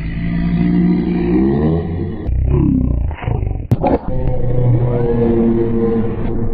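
A loud, low, engine-like drone that rises in pitch, drops, and settles on a steady note, with a sharp click a little past halfway.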